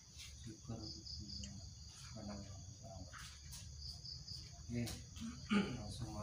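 A steady high insect trill, with a brief pulsing chirp about every three seconds. Faint, short bits of murmured speech come through now and then.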